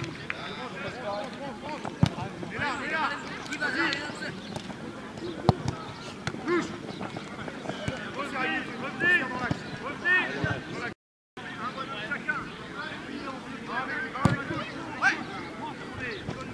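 Players' voices calling across an outdoor football pitch, with several sharp thuds of the ball being kicked. The sound drops out briefly about two-thirds of the way through.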